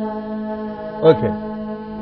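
A steady, held drone note from the accompanying instrument of a Carnatic music lesson, one unwavering pitch with many overtones. About a second in, a short voice gliding downward passes over it.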